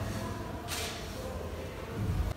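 Low room tone of a small press room, with a brief soft hiss about two-thirds of a second in.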